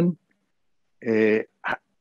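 A man's voice in a mid-sentence pause: after a cut-off word and a moment of dead silence, one held, steady hesitation sound like 'uh' about a second in, then a short click or breath just before speech resumes.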